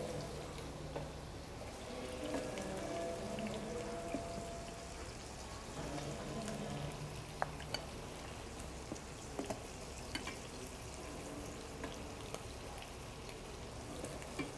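A metal ladle scooping molokhia from a stainless steel pot into a bowl, with a few light clinks of ladle on pot in the second half, over a low steady hiss.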